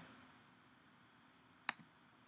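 Near silence with faint room tone, broken by a single sharp computer mouse click near the end.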